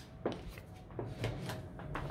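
Faint handling noise: a light knock about a quarter second in and a smaller one about a second in, with soft rustling, as a printed music sheet is set aside and a violin and bow are picked up.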